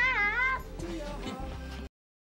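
A young girl's high-pitched excited squeal, about half a second long, its pitch wavering up and down, over soft background music; the sound cuts off suddenly near the end.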